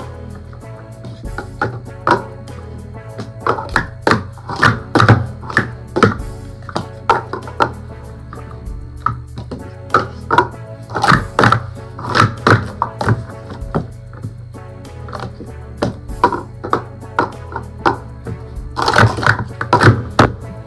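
Plastic Speed Stacks cups clacking rapidly and unevenly as they are stacked up into pyramids and down again in a timed speed-stacking run, over steady background music.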